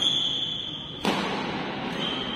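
A badminton racket striking a shuttlecock about a second in: one sharp hit that rings on in a large hall. It comes after a high, steady squeal lasting about a second.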